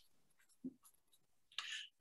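Near silence on a video-call line, broken by a brief faint sound about two-thirds of a second in and a faint, short hiss of noise near the end.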